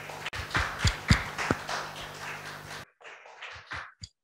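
A few thumps and taps from a handheld microphone being handled, over a steady room hum. The sound cuts off abruptly about three quarters of the way in, leaving only faint clicks.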